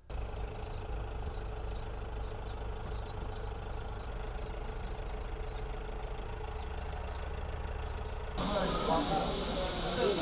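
A low, steady machinery rumble with a faint hum. About eight seconds in it cuts to a loud, steady rushing hiss of grain pouring down a metal chute.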